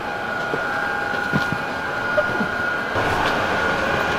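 Steady cabin noise of a parked Airbus A350-900: ventilation rumble with a thin, steady high whine, a few soft knocks and clicks, getting louder about three seconds in.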